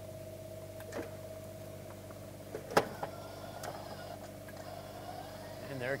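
Electric patio awning on a 2007 Tiffin Allegro Bus motorhome, its motor running steadily as the awning rolls out, with a couple of clicks, the sharper one about three seconds in.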